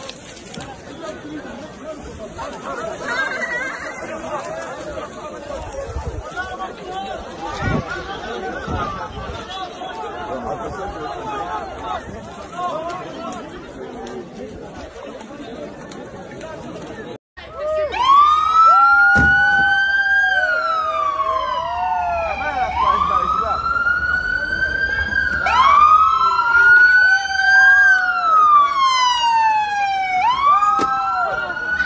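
A crowd of people talking and shouting, with a few dull thumps. After a sudden cut, police sirens start wailing: two or more sirens overlapping, each rising and falling in pitch every couple of seconds.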